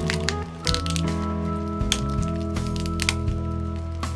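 Background music, with irregular sharp cracks and crackles of hardened epoxy drips snapping off as tape is peeled away from a resin tabletop's edge.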